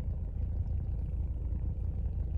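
Steady low rumble inside a car's cabin, the sound of the stationary vehicle, with no other distinct sound.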